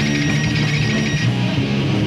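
Heavy metal band playing live with no vocals, led by a distorted electric guitar riff. A thin high ringing tone over the band stops partway through.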